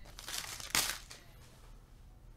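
Foil trading-card pack wrapper crinkling as it is grabbed and crumpled, in a short run of crackles during the first second, loudest just under a second in.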